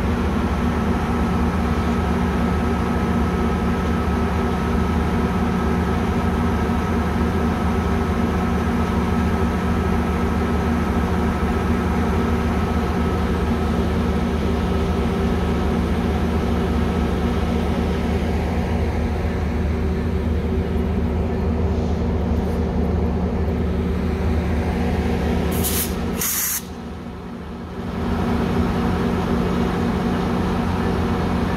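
Metrolink diesel locomotive idling steadily at a standstill: a low engine drone with a thin steady whine above it. Near the end come two short high hisses, and the sound drops for a moment.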